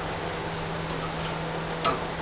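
Vegetables and skirt steak sizzling on a hot gas grill, a steady hiss under a faint low hum, with one sharp click of metal tongs against the grate near the end.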